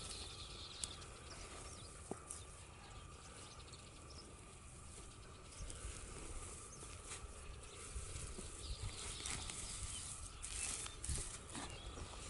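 Faint scraping and rustling of hands pushing and patting dry, sandy soil back over a burrow, with a few soft taps scattered through.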